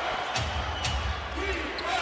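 Basketball arena game sound: steady crowd noise with a few short sharp knocks of the basketball bouncing on the hardwood court after a slam dunk.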